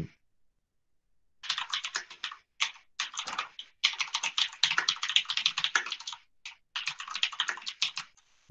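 Rapid typing on a computer keyboard: runs of quick key clicks with brief pauses, starting about a second and a half in.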